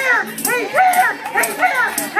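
A woman's voice shouting rapid, excited, sing-song syllables into a microphone over the church PA, each syllable short and rising and falling in pitch, with no recognisable words.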